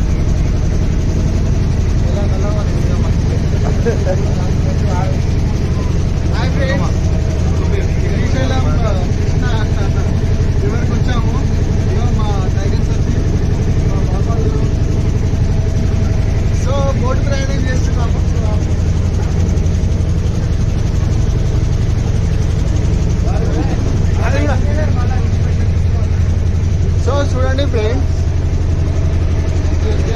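A passenger boat's engine running steadily with a low drone, with people's voices talking over it at times.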